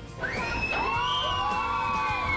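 Several log-flume riders screaming together in one long yell that lasts about two seconds, over background music.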